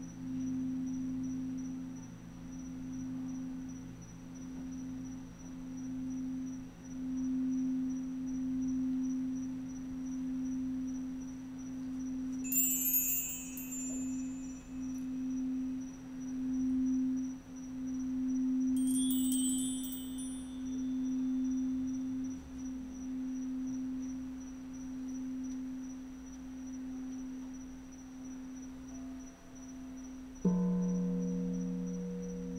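Crystal singing bowls held in a steady, pure hum of two low tones that swell and fade every couple of seconds. Twice, about twelve and nineteen seconds in, a brief shimmering run of high chimes rings over it.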